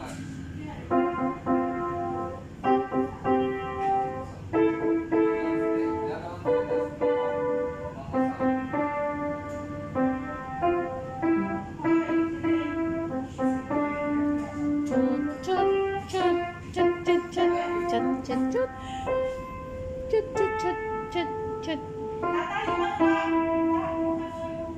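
Upright acoustic piano being played: a tune of separate struck notes over chords at an even pace, with a few quicker runs of notes in the later part.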